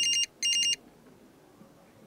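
BlackBerry mobile phone ringing: two short, high-pitched electronic rings in quick succession within the first second.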